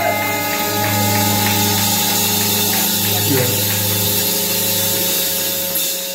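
Live band on electric guitars and bass letting held notes ring steadily as a drawn-out opening to a song, with faint clicks over them, before the drums come in.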